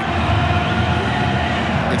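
Stadium crowd noise: a steady din from the stands after a goal, with faint held tones in it.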